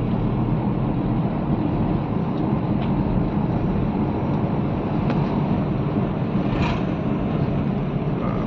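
Steady low road and engine rumble of a car, heard from inside the cabin while driving.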